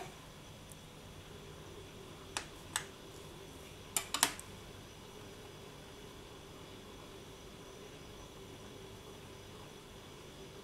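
A few light sharp clicks about two to four seconds in, from a tissue blade cutting down through polymer clay sheets onto the hard work surface as the edges are trimmed flush, over a faint steady room hum.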